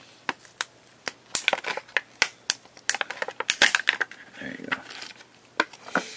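Small plastic pieces or packaging handled close to the microphone: a run of irregular sharp clicks and crinkles, busiest through the middle.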